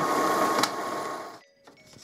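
HP Photosmart 5524 inkjet printer running as it prints a print quality report: a steady mechanical whir with a faint thin whine. It fades and cuts off about a second and a half in.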